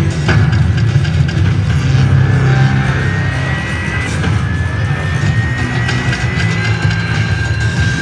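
Ainsworth Ultimate Livewire Firestorm slot machine playing its electronic game music and reel-spin sounds through several spins. The music runs over a steady low hum, with two long, slowly rising tones in the middle.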